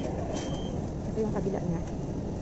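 Metro train carriage in motion: a steady low rumble with passengers' voices underneath. A high electronic beep repeats a few times, the last ending just under a second in.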